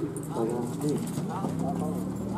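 Hoofbeats of a horse pulling a carriage, with people talking over them.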